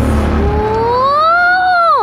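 A young girl's drawn-out vocal exclamation that rises slowly in pitch and then drops sharply at the end, over a low rumble that fades in the first half second.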